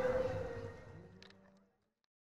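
Busy outdoor crowd sound with a steady held tone in it, fading out to dead silence over the second half: an edit fade between scenes.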